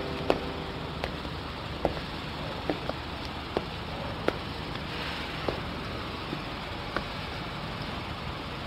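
Quiet street background noise with light footsteps on pavement: a few short, sharp taps, evenly paced at first and then more scattered.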